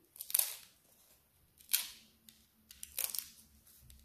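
Crisp crust of a freshly baked pinsa crackling three times as a slice is lifted and pulled apart by hand.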